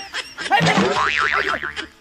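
A comic boing sound effect, a springy tone whose pitch wobbles rapidly up and down, starting about half a second in and fading out after about a second.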